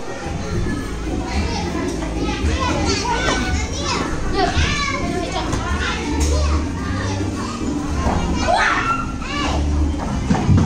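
Many young children playing together: overlapping chatter, calls and shouts in a continuous din.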